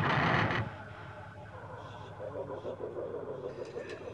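The last of a rock band's recording dies away in the first half-second. Quiet talking and laughter follow, ending in a laughing "thank you".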